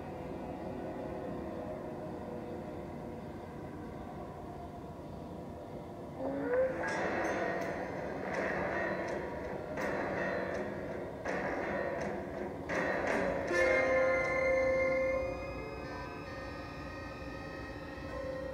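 Dark, droning background score. A few seconds in, a louder rumbling, clattering swell comes up, train-like, with sharp hits. It lasts several seconds, then settles back into held tones.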